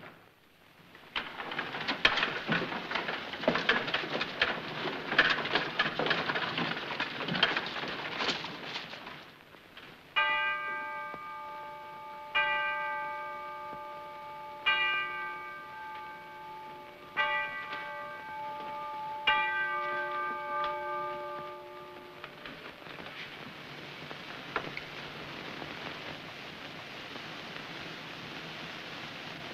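Rain falling, heavier and crackling over the first several seconds, then a steady hiss. Through it a large bell strikes five times, about two seconds apart, each stroke ringing on and dying away.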